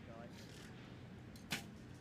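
Recurve bow shot: one sharp snap about one and a half seconds in as the string is released, over a low, steady outdoor background.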